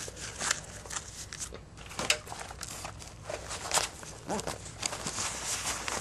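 Trading cards and a plastic card case being handled close to the microphone: irregular rustles, scrapes and small clicks.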